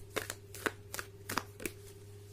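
A deck of tarot cards being shuffled by hand: a run of about six short, irregular card snaps and flicks.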